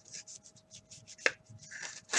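A cardboard trading card being slid into a rigid plastic top loader: a run of short scratchy rubbing strokes of card against plastic, with one sharp click a little past halfway.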